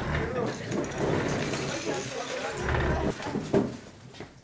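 Murmur of a group of people getting up and moving, with clicking and clattering of plastic toy bricks as they are stirred and picked out of trays.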